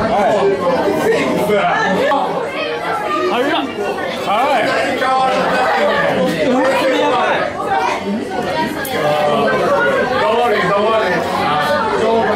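Dense chatter of many diners talking at once in a crowded, echoing eatery, with no single voice standing out.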